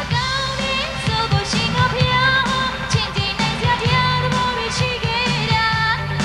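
Burmese pop song performed live: a woman singing a wavering melody into a microphone over a band, with a steady bass line and regular drum hits.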